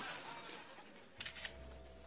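Camera shutter clicking in a quick run of about three shots a little over a second in, followed by a low steady hum.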